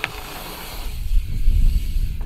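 Mountain bike tyres rolling over a hard-packed dirt jump track, with wind rumbling on the microphone that grows stronger about halfway through.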